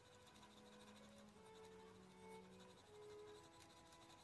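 Faint scratching of a 2 mm mechanical pencil with 2B lead shading on sketch paper, with soft background music of long held notes.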